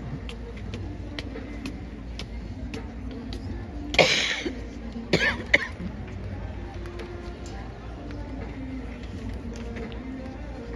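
A person close to the microphone coughing: one loud cough about four seconds in, then a shorter double cough about a second later, over a steady murmur of background voices.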